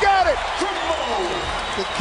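A TV basketball commentator's excited voice trailing off, over arena crowd noise, right after a dunk.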